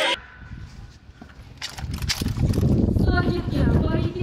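A low rumbling noise that builds about two seconds in, with a voice calling out from about three seconds in.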